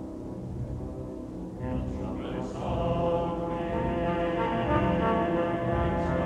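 Oratorio music for orchestra and choir: low sustained orchestral tones, then many voices entering about a second and a half in and holding chords that grow louder.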